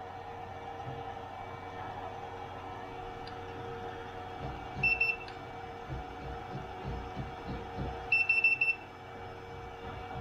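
Handheld infrared thermometer beeping as it takes readings: a short high beep about five seconds in, then a quick string of beeps about eight seconds in. A steady low hum runs underneath.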